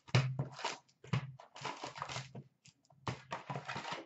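Foil-wrapped hockey card packs and their cardboard box being handled: packs are slid out of the box, a run of short rustles and light taps with brief gaps.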